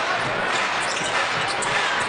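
Basketball being dribbled on a hardwood court, under a steady haze of arena crowd noise.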